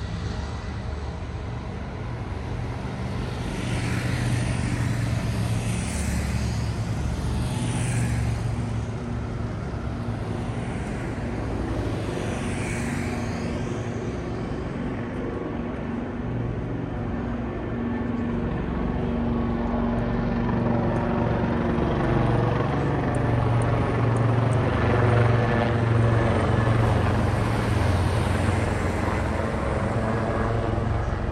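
Road traffic with a truck's engine running close by. Its low, even hum grows louder in the second half, and other vehicles swish past in the first half.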